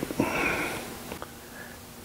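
A short breath sound from a person near the microphone, about a second long and fading, followed by quiet room tone.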